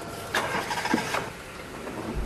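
Car door sounds as a passenger gets into a taxi: two short thumps, about a third of a second in and again just after a second, over a faint car engine.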